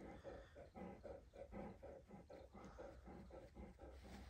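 Great Pyrenees dog panting softly, a faint, even rhythm of about four breaths a second.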